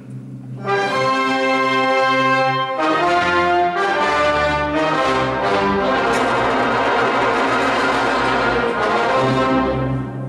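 Opera orchestra playing loud sustained chords with prominent brass and no singing. The chords enter under a second in, change a few times, and swell into a fuller, denser tutti from about halfway. That tutti breaks off just before the end.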